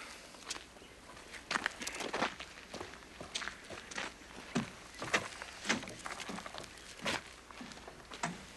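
Footsteps of a man walking away, an uneven series of short steps.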